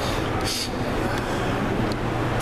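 Steady low rumble of room background noise, with a brief hiss about half a second in.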